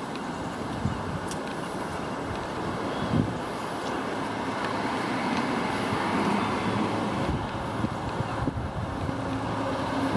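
Steady rushing outdoor noise, wind on a handheld microphone over background traffic, swelling slightly around the middle, with a few faint knocks.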